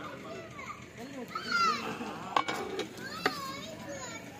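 High-pitched voices, children's among them, calling in the background, with two sharp metallic clicks, about halfway through and about a second later, from the long metal ladle knocking against the big biryani pot.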